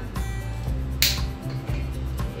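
Background music with steady low notes, and a single sharp click about a second in.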